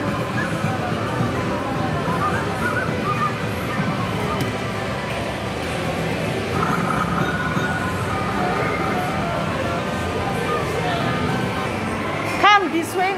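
Amusement arcade din: electronic game music and jingles from the machines, with indistinct voices in the background.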